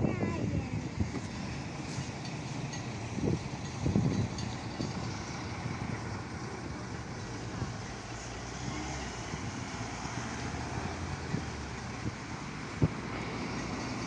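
Steady street traffic noise with voices here and there, and a single sharp knock near the end.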